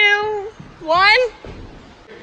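Two loud, high-pitched vocal cries from a person: one held at the start and a rising one about a second in, with no recognisable words.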